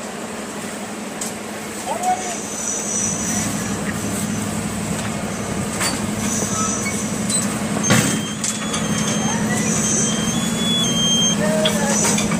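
A steady machine hum with a rushing hiss, growing a little louder, with short high whistling tones now and then and a sharp click about two-thirds of the way through.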